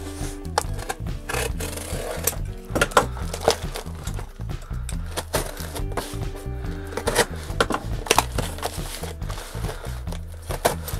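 Background music, with a utility knife slicing packing tape and cardboard flaps scraping and creasing as a box is opened, heard as a run of short sharp cuts and scrapes.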